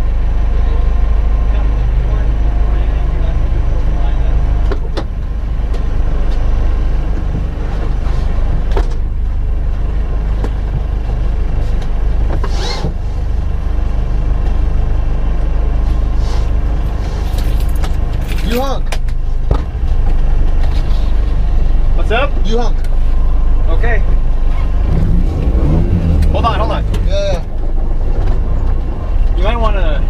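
Honda Civic engines idling with a steady low rumble while the cars stand at the start line. Muffled voices come in and out in the second half.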